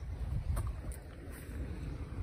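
Wind buffeting the microphone in a low rumble, with a soft knock about half a second in from a hoe chopping into the wet mud of an irrigation channel bank.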